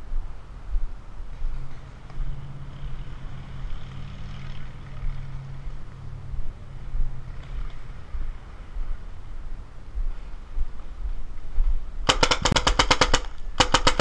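Paintball marker firing rapidly near the end, in two quick strings of sharp shots at about ten a second with a brief break between them.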